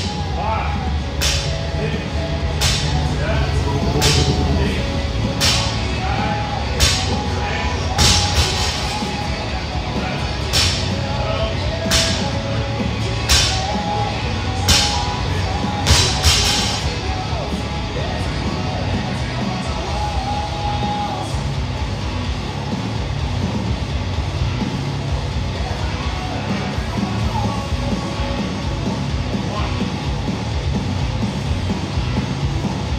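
Barbell loaded with bumper plates knocking on the rubber gym floor with each rep, one sharp knock about every second and a half, about thirteen in the first sixteen seconds before it stops. Rock music plays throughout.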